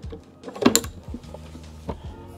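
Metal clicks as a TruBlue auto belay's handle is clipped onto a carabiner: a sharp clink cluster well before the middle and a single lighter click near the end.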